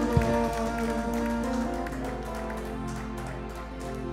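Live church worship band playing a soft instrumental passage: held keyboard chords with light percussion taps, growing gradually quieter.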